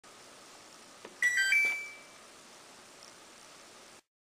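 A small click, then a quick three-note electronic beep: a middle note, a lower one, then a higher note that is held and fades away, over faint room tone.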